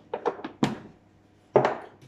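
Several light plastic clacks, then a louder knock about one and a half seconds in: plastic kitchen containers being lidded and set down on a worktop.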